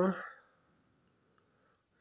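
A man's drawn-out 'jo' trailing off, then near silence with a few faint ticks.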